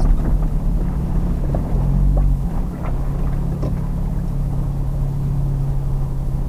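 Engine and road noise of a 4x4 heard from inside the cab while driving: a steady low drone over rumble, its pitch dropping slightly about two and a half seconds in as the vehicle slows to turn into a car park.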